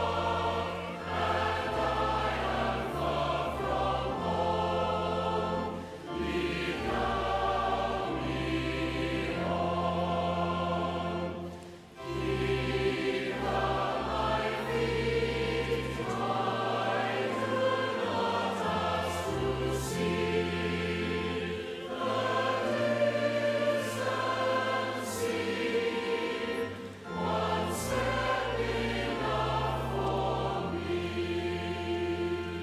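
A large choir singing over steady, sustained low accompaniment, phrase after phrase with short breaks between, the clearest break near the middle.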